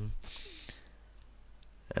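A pause in a man's speech, close to a headset microphone, holding a few faint mouth clicks from lips and tongue before he speaks again.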